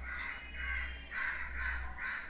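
A bird calling repeatedly in the background, a quick run of short calls, over a steady low hum.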